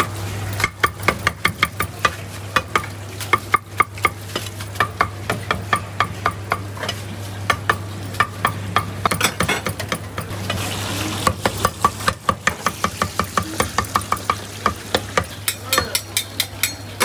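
Cleaver chopping on a round wooden chopping block, several quick strikes a second with a couple of short lulls. Beneath it run a steady low hum and the sizzle of oil deep-frying in a wok.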